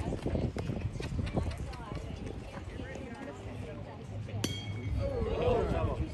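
Background voices of people talking around a youth baseball field. About four and a half seconds in there is a single sharp metallic clink with a short ring.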